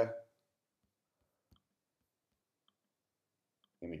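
Near silence with a single faint click about a second and a half in: a computer mouse button being clicked.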